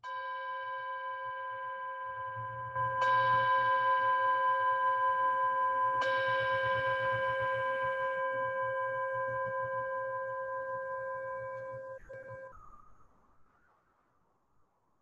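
A bell struck three times, about three seconds apart. Each stroke renews one steady ringing tone, which carries on until it cuts off suddenly about twelve and a half seconds in.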